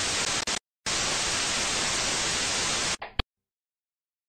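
TV static hiss used as a sound effect: a short burst that drops out for a moment, then a steady hiss for about two seconds that cuts off suddenly about three seconds in, with a sharp click just after.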